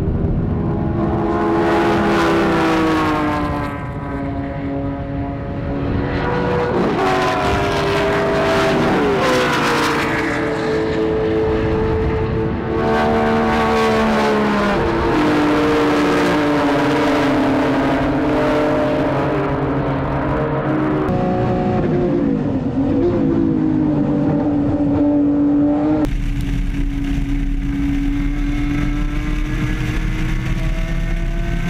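Touring race car engines at high revs, the pitch repeatedly falling and rising as the cars pass, brake and accelerate. About 26 s in the sound changes abruptly to a steadier engine note with a heavy low rumble of wind on a car-mounted camera.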